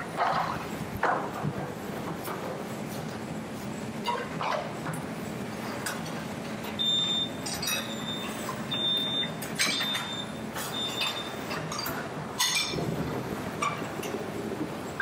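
Busy restaurant kitchen background: a steady hum of ventilation and equipment with scattered light clatter. A high electronic beep from kitchen equipment sounds about once a second for several beeps in the middle.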